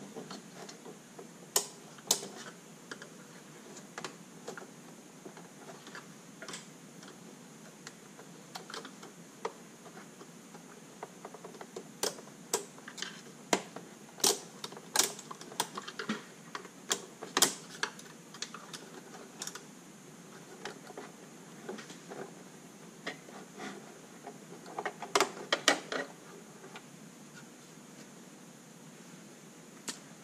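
Irregular small plastic clicks and taps as a thin steel pick, cut down from an engine oil dipstick, is worked around the pressure tabs holding an instrument cluster's circuit board onto its pins. The clicks come singly and in short runs, with a quick burst of them near the end as the board comes free.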